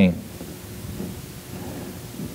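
A pause in a man's speech: steady low background hiss and room rumble, with the tail of his last word fading out at the very start.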